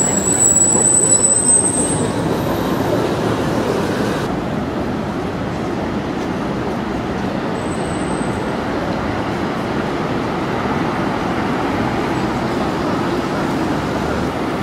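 Steady city street noise of passing traffic, with a faint high whine in the first two seconds.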